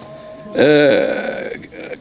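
A man's drawn-out hesitation vowel, a single 'aaah' of about a second that starts about half a second in, its pitch rising and then falling, as he pauses mid-sentence.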